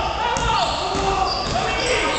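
Basketball game sounds in a sports hall: background voices from people in the hall, with a basketball bouncing on the court.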